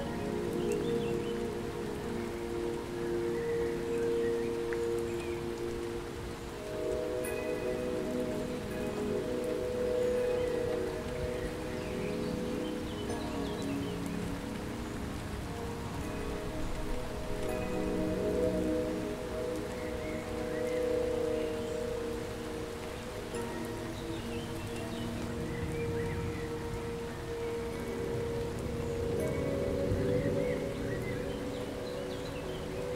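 Calm ambient music of soft, held chime-like tones changing every few seconds, over a steady hiss like rain.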